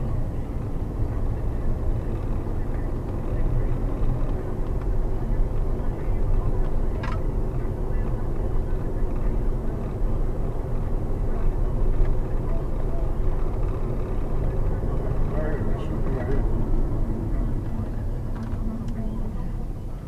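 Steady road and engine noise heard inside the cabin of a car being driven.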